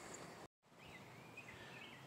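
Near silence: faint outdoor background noise, cut to dead silence for a moment about half a second in.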